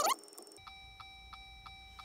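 Faint electronic tones from the Jeep Wrangler JL's cabin electronics with the ignition on and the engine off: a short rising chirp, then steady tones with a fast, even ticking of about five ticks a second.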